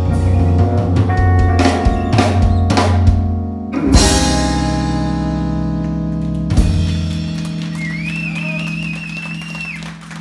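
Live jazz quartet of violin, electric keyboard, bass guitar and drum kit playing the closing bars of a piece: busy playing with drum hits, then a final struck chord about four seconds in that rings out and slowly fades, with one more accent near seven seconds. A thin wavering high tone sounds near the end.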